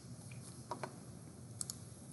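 A few faint computer key clicks, in two close pairs about a second apart, over low room hiss.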